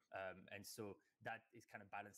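A man's voice talking faintly, turned down low: the original interview speech heard under a dubbed voice-over.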